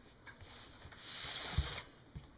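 A brief rubbing, sliding noise about a second in, lasting under a second, with a soft thump near its end.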